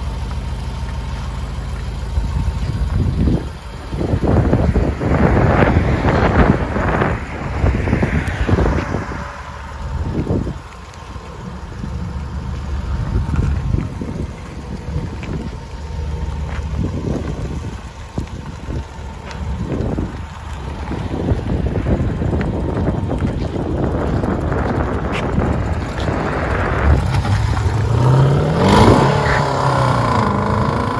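Dual exhaust of a 2012 Jaguar XJ's supercharged 5.0-litre V8, running with its resonators deleted. It is revved in several short bursts, then pulls away and accelerates, rising in pitch near the end.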